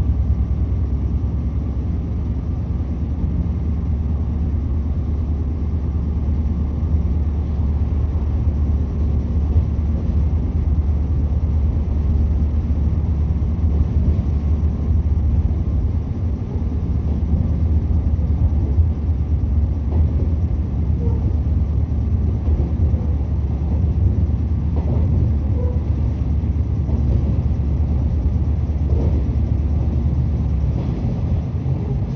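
Interior running noise of a JR 113 series electric train pulling away from a station stop and picking up speed: a steady low rumble from the wheels on the rails and the traction motors.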